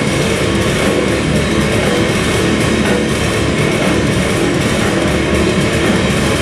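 Live heavy metal band playing loud, steady and unbroken: distorted electric guitars, bass and drum kit on a club stage.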